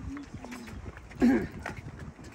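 Footsteps of several people walking on a concrete path, with a person's short hummed "hmm" a little over a second in, the loudest sound.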